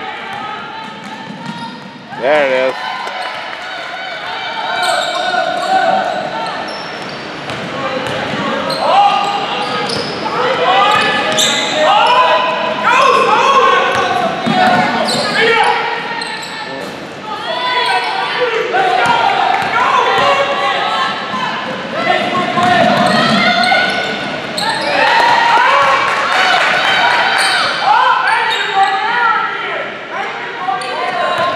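A girls' basketball game on a hardwood court: the ball bouncing and players' voices calling out, echoing in a large gymnasium.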